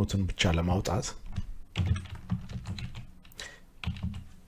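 Typing on a computer keyboard: a series of separate key clicks as a few words are keyed in.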